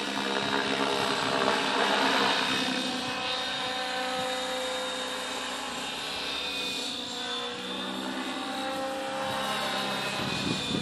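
Align T-Rex 600E Pro electric RC helicopter in flight overhead: a steady whine of its brushless motor and main rotor, loudest about two seconds in, with the pitch shifting a little as it manoeuvres.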